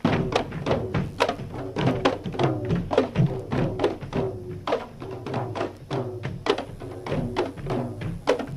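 Manipuri dhol barrel drums beaten by dancers in a Dhol Cholom drum dance: a fast run of loud, sharp strikes, several a second in uneven groups.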